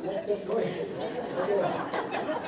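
Chatter of several people talking at once, their voices overlapping in a room.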